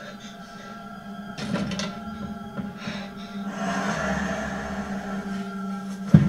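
Horror film soundtrack: a sustained drone of held tones, with a hiss swelling in about halfway and the sound slowly growing louder.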